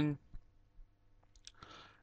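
A spoken word ending, then a pause with a few faint clicks and a short in-breath near the end.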